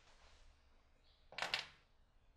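Brief handling noise of small objects on a tabletop: one short scrape-and-clatter about one and a half seconds in, as tools and a glue tube are picked up.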